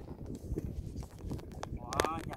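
Irregular small knocks and splashes as a gill net is worked hand over hand from a wooden boat, over a low rumble of wind on the microphone. A voice starts near the end.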